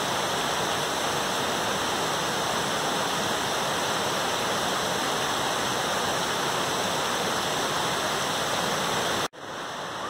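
A waterfall in high flow, water pouring down a rock face: a steady, even rush of water that cuts off suddenly near the end.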